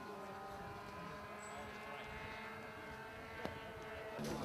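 Faint, steady drone of a model aircraft engine running, its pitch drifting slowly, with one short click about three and a half seconds in.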